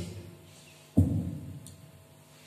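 A single low thud about a second in, fading over half a second, over a faint steady hum.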